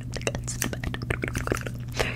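Irregular soft clicks and crackles right at the microphone, close-up ASMR trigger sounds, over a low steady hum.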